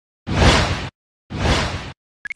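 Two whoosh sound effects in an animated logo intro, one after the other, each lasting a little over half a second with a sudden start.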